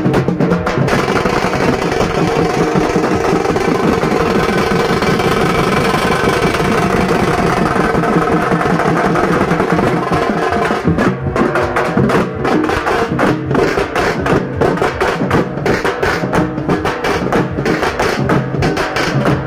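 Loud festival procession drumming with music: a dense, continuous wall of drums and accompaniment, then from about eleven seconds in, rapid sharp drum strikes stand out with brief gaps between them.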